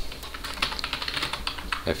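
Computer keyboard typing: a quick, irregular run of key clicks as a command is typed into a terminal.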